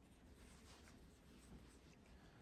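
Near silence with the faint rustle and scratch of a crochet hook pulling yarn through as chain stitches are worked.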